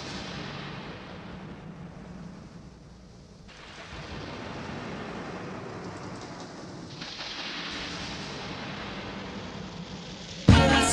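Rain-and-thunder sound effect opening a song: an even hiss of rain over low rumbling. The hiss thins about three and a half seconds in and grows brighter again around seven seconds.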